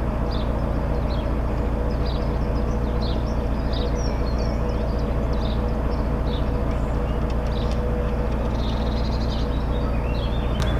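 A narrowboat's inboard diesel engine running steadily while cruising, with small birds chirping now and then over it.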